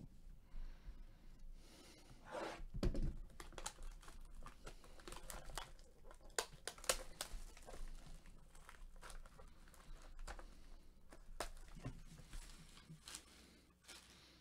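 Clear plastic shrink-wrap being torn and peeled off a cardboard hobby box of trading cards, crinkling in a run of quick crackles, loudest about three seconds in.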